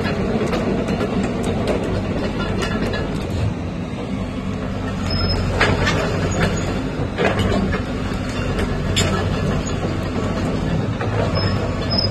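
Caterpillar 312D hydraulic excavator's diesel engine running steadily as the machine travels and swings on its steel crawler tracks. Irregular clanks and clicks from the track links sound over the engine, most of them in the middle of the stretch.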